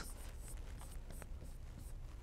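Faint scratching and tapping of a stylus writing on a tablet, in a few short strokes.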